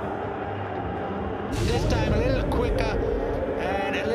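Cricket stadium crowd noise with indistinct shouting voices, swelling about one and a half seconds in.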